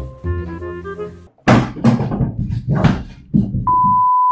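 Light mallet-percussion music that cuts off after about a second, followed by several loud noisy crashes and rushes. Near the end a steady high test-card beep starts.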